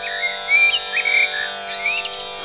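A tanpura drone rings steadily while a bird gives a string of short, whistled chirps that slide up and down in pitch, several times over two seconds.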